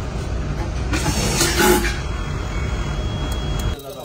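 Steady low rumble of background noise, with a hiss swelling about a second in; it cuts off abruptly near the end.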